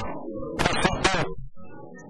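A person speaking Portuguese, the speech trailing off into a short pause near the end.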